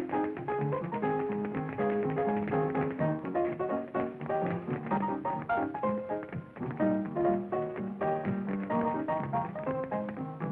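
Lively hot-jazz dance tune played for a rehearsal, with sharp taps of dancers' shoes on a wooden floor along with the beat, on a thin early sound-film recording.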